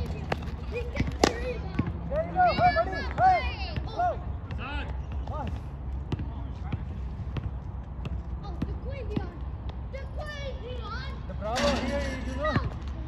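A ball struck hard once, a sharp knock about a second in, with lighter knocks here and there, amid players' voices shouting across the game.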